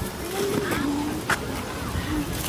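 Voices of people and children calling on a busy street, over a low steady rumble, with one sharp click or knock just past halfway.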